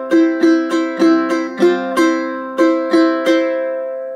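Ukulele strummed in the island strum pattern, a C chord changed briefly to Csus4 by adding a finger on the first fret of the E string. The last strum a little past three seconds in is left to ring and fade.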